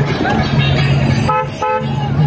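A road-vehicle horn beeping twice in quick succession about a second and a half in, over the noise of junction traffic.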